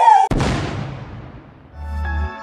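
A single sudden boom with a long fading rumble and hiss, used as a hit at a scene cut. Soft music with a steady low bass note begins near the end.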